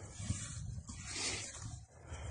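Mule deer buck straining with its antlers locked to a dead buck's antlers: faint, rough, breathy noise with a few light knocks.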